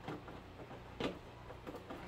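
Hard plastic scale body being pressed down onto an RC rock crawler chassis: a few faint plastic clicks and knocks, the sharpest about a second in.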